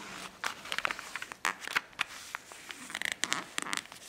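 A sheet of origami paper being folded in half and its crease pressed down by hand, giving a quick run of short crackles and rustles.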